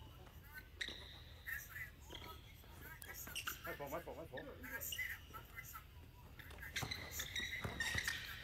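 Basketball sneakers squeaking in short chirps on a hardwood gym floor, with a few sharp basketball bounces that come more often near the end, under faint voices.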